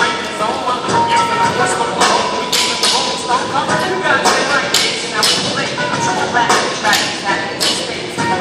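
Voices calling out and talking in a large, echoing gym hall during a barbell workout, with a run of sharp knocks and claps roughly every half second to a second.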